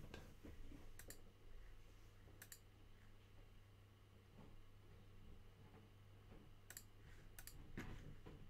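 Near silence broken by a handful of faint, sharp clicks, spread out and irregular, like a computer mouse being clicked.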